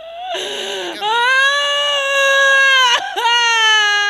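A woman wailing through a handheld microphone. A ragged sobbing breath comes first, then one long, high, held cry lasting about two seconds, and a second cry begins shortly after three seconds.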